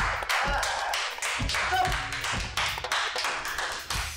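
A few people clapping their hands, a quick irregular patter of claps.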